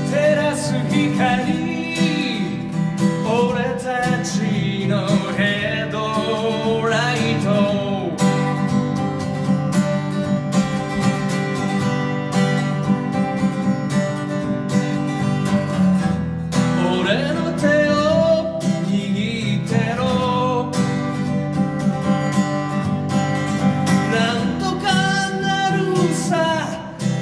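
A man singing a ballad to his own strummed acoustic guitar. The singing pauses for several seconds in the middle while the guitar plays on, then comes back.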